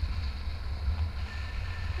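Airflow of a paraglider in flight buffeting the camera microphone: a steady, fluttering low rumble of wind noise.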